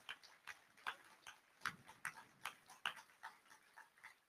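A few faint, scattered hand claps, irregular, about three a second.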